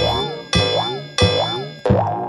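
Cartoon clock striking the hour: four bell-like strikes, about two-thirds of a second apart, each ringing with a wavering, springy pitch.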